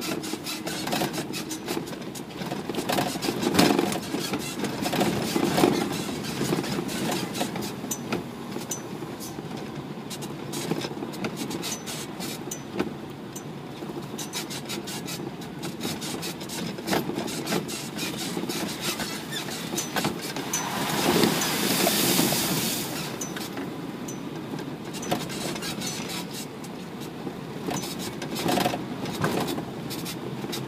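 Isuzu NPR350 4WD diesel truck driving down a rough unsealed track: engine running under a steady road noise, with frequent short knocks and clatters from the body and load over the bumps. A louder rush swells about 21 seconds in and lasts around two seconds.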